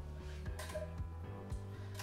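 Soft background music with steady low tones and a beat of about two a second, with a brief rustle about half a second in.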